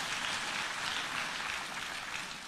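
Audience applauding, a steady even clapping that eases off slightly near the end.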